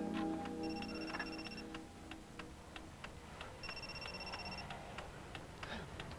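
A clock ticking steadily, about three ticks a second, while a music cue fades out. Twice, a telephone gives a one-second electronic ring, the rings about three seconds apart.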